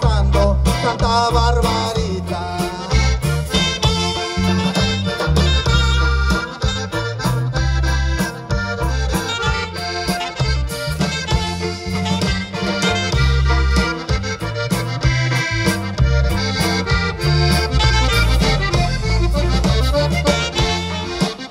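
Live norteño band playing through a PA system, with the accordion carrying the melody over a steady bass and drum beat.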